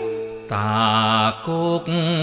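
Cambodian pop love song: the guitar break fades out, and about half a second in a male voice comes in singing long, wavering held notes with vibrato over soft backing. The notes come in three short phrases with brief breaths between them.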